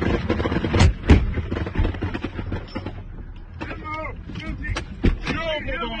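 Two sharp gunshots about a second in, a quarter second apart, and another near the end, over the steady low rumble of a vehicle engine; men's voices break in during the second half.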